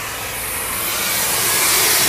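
Steady, loud hiss of vapour venting from a broken-down McLaren P1, swelling slightly as it goes.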